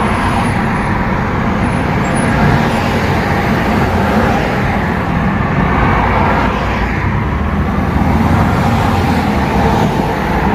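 Steady road and engine noise of a moving car heard from inside its cabin: a heavy, even low rumble of tyres and engine with no sudden events.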